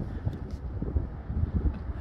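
Wind buffeting the microphone outdoors: an uneven low rumble with irregular gusty surges and no steady tone.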